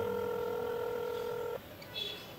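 A phone's calling tone: one steady electronic beep that cuts off suddenly about one and a half seconds in.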